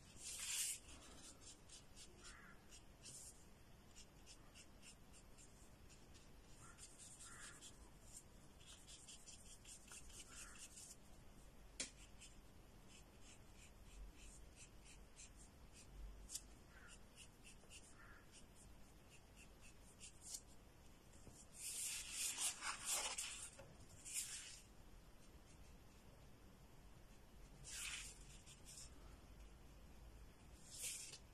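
Faint brush strokes of a paintbrush laying gouache paint onto paper, in quick repeated runs, with a louder spell of brushing for a couple of seconds a little past the middle.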